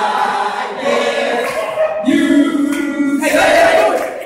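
A group of men singing together in unison without accompaniment, with a long held note about two seconds in.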